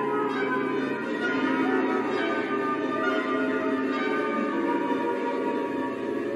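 Symphony orchestra playing a dense passage of many held tones layered together, with ringing, bell-like colour and soft strokes about two and four seconds in.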